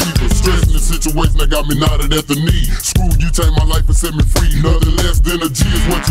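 Chopped-and-screwed hip-hop: slowed, pitched-down rapping over a beat with heavy bass and steady drum hits.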